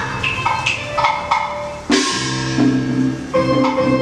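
Taiwanese opera band music: sharp ringing percussion strikes about three a second. A loud crash comes just before two seconds in, then pitched instruments hold steady notes over a regular beat.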